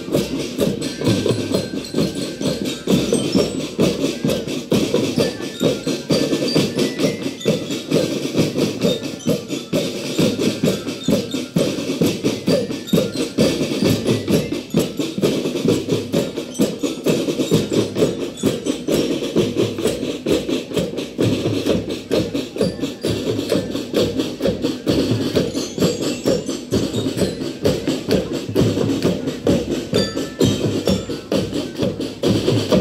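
A school marching drum band playing, its marching drums beaten in a fast, continuous rhythm.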